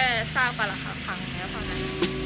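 A woman speaking, with background music fading in near the end.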